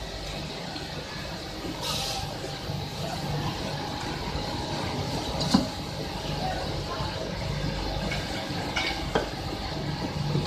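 Steady factory machinery noise with a low hum, a short hiss about two seconds in and a few sharp clicks later on.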